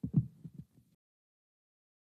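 Handheld microphone handling noise: a few low, muffled thumps for about a second, then the sound cuts off to silence.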